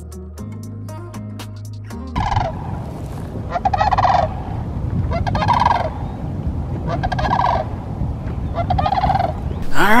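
Guitar music cuts off about two seconds in. It is followed by a pair of large birds calling in flight: about five wavering calls, each dropping in pitch at the end, over low wind noise.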